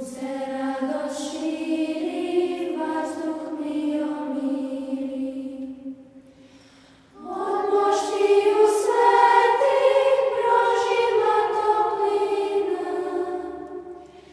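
Children's church choir singing a Serbian church song: one sung phrase, a short break about halfway through, then a second, louder phrase.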